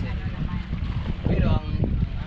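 Wind buffeting the microphone, an uneven low rumble throughout, with a short stretch of a person talking partway through.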